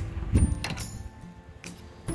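Steel tongs clicking and scraping against a charcoal grill's wire grate as whole eggplants are turned: a few sharp metallic clicks, the loudest about half a second in.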